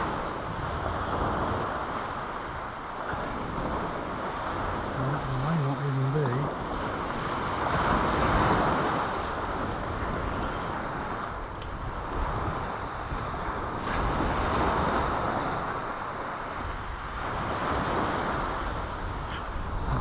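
Sea waves breaking on the shore, the wash swelling and fading every few seconds, with wind noise on the microphone.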